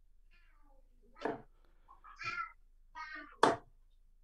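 Darts striking a bristle dartboard, two sharp thuds about 2 s apart, the second louder. Between them come several short, pitched, wavering calls.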